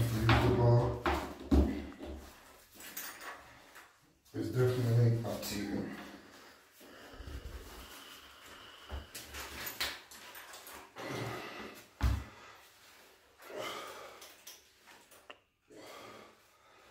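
Knocks, clicks and rattles of a resistance-band bar and its metal clips being handled, with a sharp knock about one and a half seconds in and another near twelve seconds. A man's voice is heard briefly at the start and again about four seconds in.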